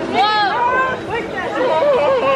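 Chatter of several people talking over one another, with no words standing out.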